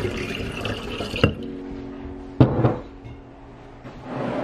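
Water pouring into a large glass jar, which stops about a second in with a click. Soft background music with held notes follows, with one sharp knock about halfway through.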